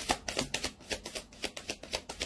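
A tarot deck being shuffled by hand: a quick, even run of soft card slaps and clicks, about six or seven a second.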